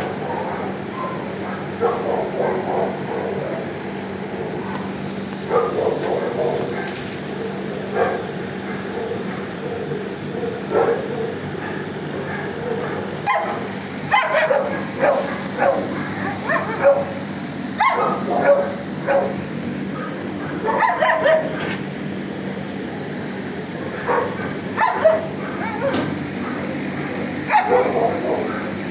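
Dogs barking and yipping in a shelter kennel block, short barks coming in clusters over a steady low hum.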